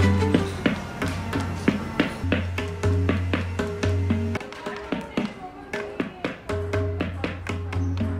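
A quick run of sampled tabla strokes, several a second, triggered by finger-worn pressure sensors tapped on a hard surface. Deep sustained bass tones run under the strokes and drop out for about two seconds midway.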